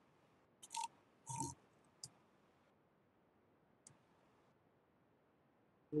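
Near silence broken by four faint, short clicks and noises in the first four seconds.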